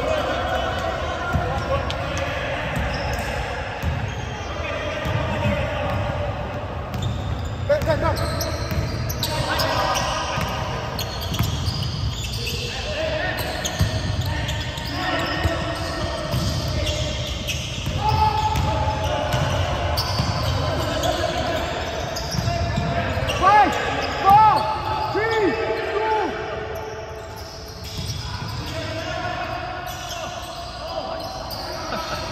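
Basketball game on a hardwood court: the ball bouncing on the floor, sneakers squeaking and players' voices calling out, echoing in a large gym. A quick run of squeaks is loudest about three-quarters through.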